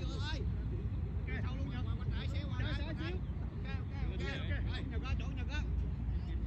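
Several overlapping voices talking and calling out, none close or clear, over a steady low rumble.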